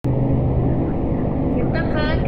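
A steady low rumble with a low hum in its first half, and a woman's voice starting near the end.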